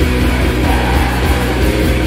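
Live hardcore/emo band playing loudly: distorted electric guitars, bass and drums in a dense, continuous wall of sound.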